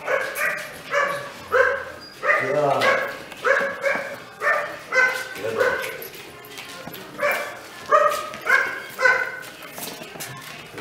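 A young dog barks in short, high-pitched barks, about sixteen in a row, at a steady pace of one every half second or so.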